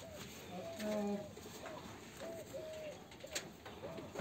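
A bird calling over and over with short, arched calls, with a sharp click about three and a half seconds in.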